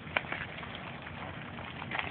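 Dungeness crabs being handled on a wire crab trap and the barge deck: one sharp click near the start, then a few fainter ticks over steady outdoor background noise.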